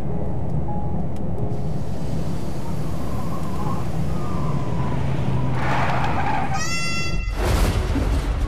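Steady road rumble inside a moving car. About six seconds in there is a rising screech, then a brief cut-out and a loud crash: the sound of the car's accident.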